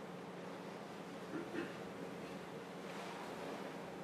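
Quiet room tone: a steady low hum and hiss, with a couple of faint soft knocks about a second and a half in.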